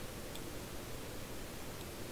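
Steady low hiss of room tone from a desk microphone, with two faint clicks of a computer mouse, one early and one near the end.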